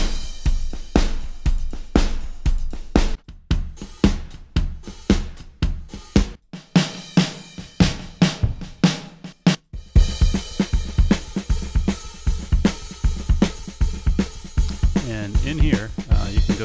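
Addictive Drums 2 virtual acoustic drum kit playing preset grooves of kick, snare and hi-hat. The beat breaks off and a new groove at a different tempo starts twice, at about 6 seconds and just before 10 seconds.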